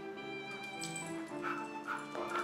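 Background music, with a dog, an Airedale terrier, giving two short barks in the second half.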